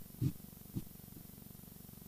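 A few soft, low thumps in the first second, from hands handling something right at the microphone, over a steady low hum. After the thumps only the hum remains.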